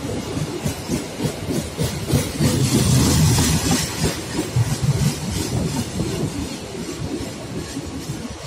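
Indonesian economy-class passenger train coaches rolling past on the track, their wheels rumbling and clattering over the rails, loudest about three seconds in.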